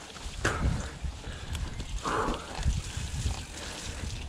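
YT Jeffsy mountain bike being ridden over a grassy, overgrown trail onto dirt: tyres rolling and the bike rattling over the ground, with a low rumble of wind on the microphone. There is a sharp knock about half a second in and a louder rush about two seconds in.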